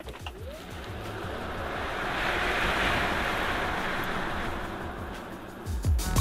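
Rushing road and wind noise inside the cabin of a Tesla Model S P85D under hard electric acceleration in insane mode, swelling over about three seconds and then easing off. Background music with a steady beat plays throughout and grows louder near the end.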